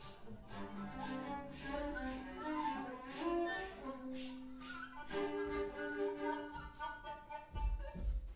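Viola and cello bowed together in free improvisation, long held notes overlapping and shifting in pitch every second or so. A low thump near the end.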